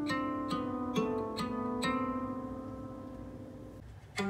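A 16-string solid-body lyre harp plucked: four notes in the first two seconds, then left to ring and slowly fade away.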